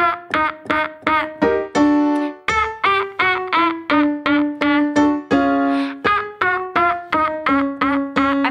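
A woman singing short, strong staccato 'ah' notes with her tongue stuck out, about three a second, stepping up and down in pitch. A piano accompanies her on the same notes.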